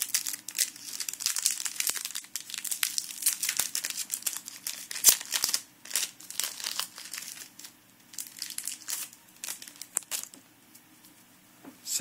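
Foil booster pack wrapper and trading cards being handled: dense, crisp crinkling and rustling that thins out after about six seconds and dies down near the end.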